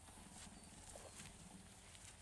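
Near silence: faint outdoor ambience with a low rumble and a couple of faint ticks.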